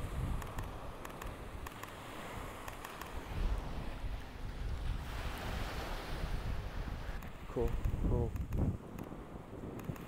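Small waves washing up a sandy beach, with wind rumbling on the microphone. A wave's wash swells and fades about halfway through.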